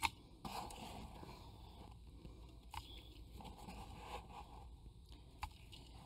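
Faint scraping and rustling of potting soil being spread by a gloved hand in the bottom of a glazed ceramic pot, with a few light clicks.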